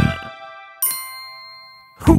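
A music phrase dies away, then about a second in a bright cartoon chime sound effect strikes once and rings down slowly.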